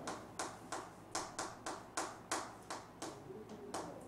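Chalk tapping and scratching on a chalkboard as a line and a short word are written, in quick, sharp strokes about three a second.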